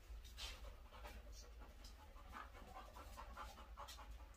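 Golden retriever panting faintly.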